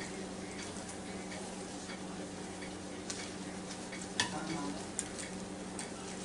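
Steady faint hum and hiss in a kitchen, with a few light clicks of a knife and fork against a plate as a cooked chicken wing is cut into.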